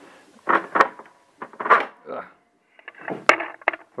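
Handling noise: two short rustles early, then a quick run of sharp clicks and knocks from about three seconds in, as the printed copper-clad board is taken out of the opened laser printer.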